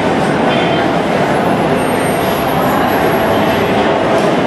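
Steady crowd babble: many overlapping voices with no single voice standing out, mixed with background noise.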